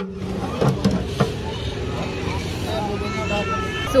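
Busy street-market ambience: a steady engine-like drone under faint voices of people nearby, with a few sharp knocks in the first second and a half.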